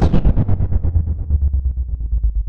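A long, low, rapidly fluttering fart that starts suddenly and carries on steadily.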